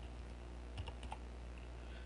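Faint computer keyboard typing: a handful of soft, scattered keystrokes over a low steady hum.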